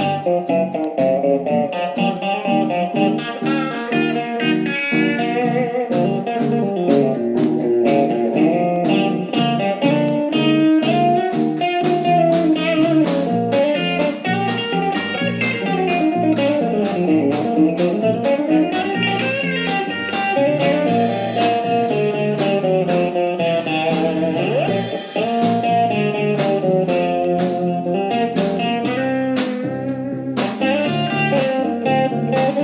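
A small band playing a funky, bluesy jazz tune live: electric guitar and keyboard over a steady drum beat.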